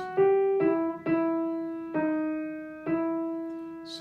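Knight upright piano played one note at a time by the right hand alone: five notes moving stepwise, mostly downward, the later ones held longer and ringing away between strikes.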